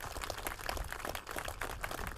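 Audience applauding: many hands clapping together in a dense, even patter.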